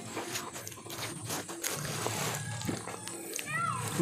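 Bananas being peeled and handled, with scattered small clicks and rustles of peel, and eating sounds. Near the end comes a short call that slides down in pitch.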